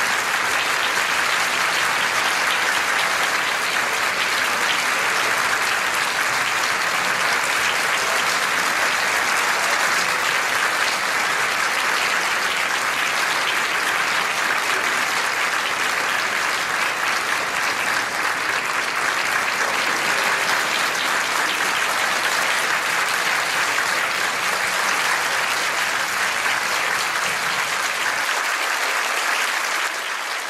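A concert audience applauding steadily after a live piano encore.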